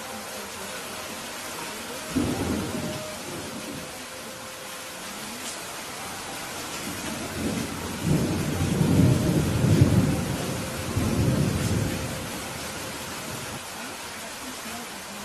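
Thunderstorm ambience: steady rain with a low thunder rumble that breaks in suddenly about two seconds in, then a longer, louder rolling peal of thunder from about eight to twelve seconds.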